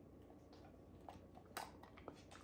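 A dog chewing a small treat: a few faint, short clicks against near silence, the clearest about a second and a half in.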